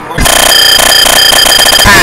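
A loud, high-pitched electronic alarm-like tone, rapidly pulsing, that starts just after the beginning and cuts off suddenly near the end.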